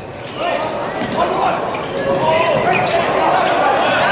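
Volleyball rally in a large, echoing arena: the ball is struck several times with sharp slaps. Players' voices call out over it, growing louder about half a second in.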